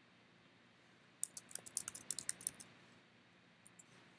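Computer keyboard typing: a quick run of about a dozen keystrokes in a second and a half, followed by two faint clicks near the end.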